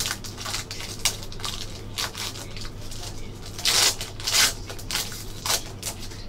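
Foil wrapper of a Panini Spectra trading card pack crinkling and tearing as it is pulled open by hand. There are a few louder rips a little past the middle.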